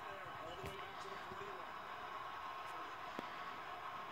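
Football broadcast sound from a television: faint voices over a steady background din, with one sharp click about three seconds in.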